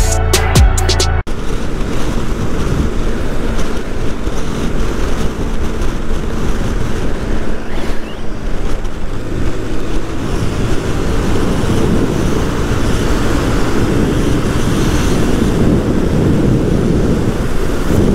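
A music track with a drum beat cuts off abruptly about a second in, leaving the steady rush of wind on the microphone mixed with a motorcycle's engine and tyre noise at highway speed.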